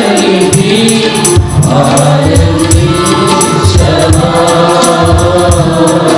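Small mixed church choir singing a Telugu Christian worship song into microphones. A tambourine jingles in a steady rhythm over the band's accompaniment and a regular low beat.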